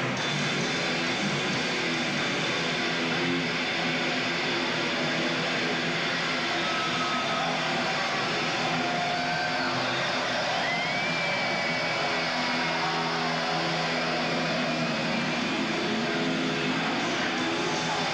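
Distorted electric guitars holding a sustained drone, with thin wavering whines gliding above it from about the middle on, under a constant wash of arena noise, heard through a muffled audience recording.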